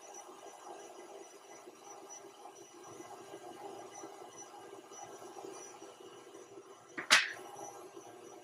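KitchenAid stand mixer with its grinder and sausage-stuffer attachment running, a steady faint hum as it pushes filling through the stuffing tube into a manicotti shell. A single sharp click about seven seconds in.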